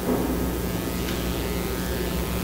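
A steady low electrical hum with room noise.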